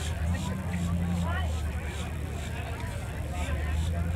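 Faint background chatter of people over a steady low hum, with no close voice.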